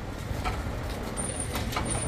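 City street ambience: steady traffic rumble, with a few sharp clicks and a short high-pitched whine twice in the second half.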